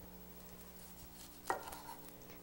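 A large kitchen knife slicing through a seaweed-wrapped rice roll on a wooden cutting board, with one sharp knock of the blade on the board about one and a half seconds in.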